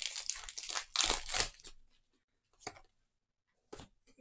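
Foil Pokémon Darkness Ablaze booster pack wrapper being torn open, a crackly crinkling tear lasting about two seconds. Later come two short faint ticks.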